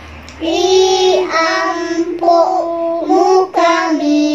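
Children singing a slow song in long held notes, starting again after a short pause right at the beginning.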